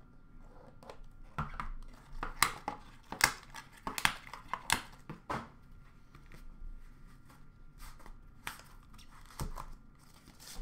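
Card boxes and their packaging being handled and set down in a plastic bin: scattered clicks, knocks and rustling, busiest in the first five seconds and sparser after.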